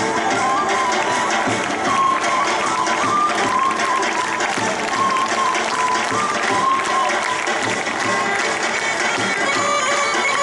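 Live Macedonian folk dance music: a wind instrument plays an ornamented melody over a steady drone, with the regular beat of a large tapan drum.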